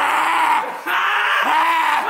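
A young man screaming loudly at close range: two long screams with a short break just before a second in.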